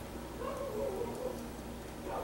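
A faint, wavering, whine-like voice sound from about half a second in, lasting about a second.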